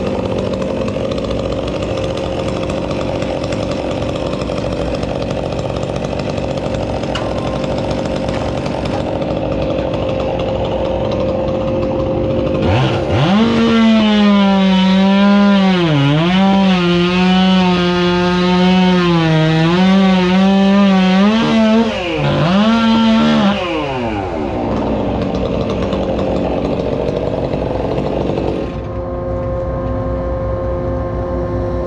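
Steady engine drone in the background, then a gas chainsaw revs up about 13 seconds in and runs at full throttle for about ten seconds while cutting. Its pitch dips briefly twice as the chain bogs under load, then falls back to idle.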